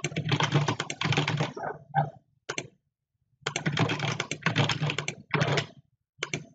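Rapid typing on a computer keyboard in two bursts, separated by a pause of about two seconds that holds a couple of single clicks.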